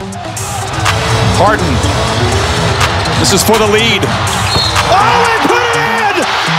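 Live basketball game sound: a ball bouncing on a hardwood court and sneakers squeaking among arena crowd noise, with music underneath.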